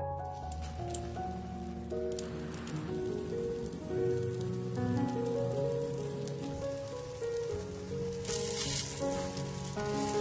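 Egg-battered round squash slices sizzling and crackling in hot oil in a frying pan, under background music. The sizzle swells louder for about a second near the end.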